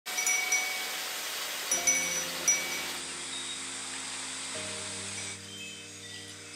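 Imari-ware porcelain wind chimes (furin) ringing: a handful of clear, high, bright strikes in the first three seconds. Soft background music with sustained low tones comes in under them after about two seconds.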